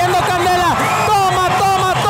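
Boxing-arena crowd shouting and cheering, many voices overlapping and some calls held long.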